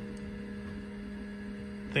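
Steady low electrical hum, with a few fainter steady higher tones, from a running 1983 Apple Lisa-1 computer.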